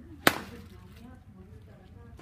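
A golf iron strikes a ball off a hitting mat: one sharp, loud crack about a quarter of a second in, with a short ringing tail.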